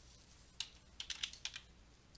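A quick run of about six faint clicks of computer keys, about half a second to a second and a half in, as a selected block of handwriting is deleted.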